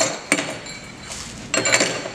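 Small stamped-steel trailer hub grease caps clinking against each other as they are unwrapped from bubble wrap and set down, with plastic crinkling. Sharp clinks come about a third of a second in and again near the end.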